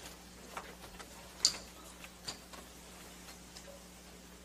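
A few light, sharp clicks, the loudest about a second and a half in, over a steady low hum.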